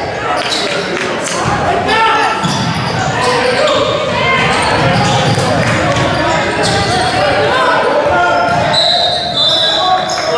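A basketball bouncing on a hardwood gym floor, with many overlapping voices of players and spectators, echoing in a large gym hall. A brief high-pitched squeal comes near the end.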